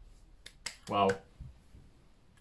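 A few sharp clicks in quick succession about half a second in, followed by a spoken "wow".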